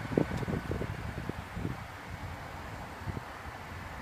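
Outdoor background rumble with wind on the microphone, with a few soft knocks in the first second or two before it settles to a steady low noise.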